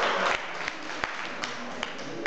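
Clapping in a large hall: sharp single claps at an even pace, about two and a half a second, over a low haze of crowd noise.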